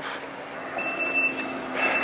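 A reversing vehicle's backup alarm beeping on one steady high pitch, starting about a second in.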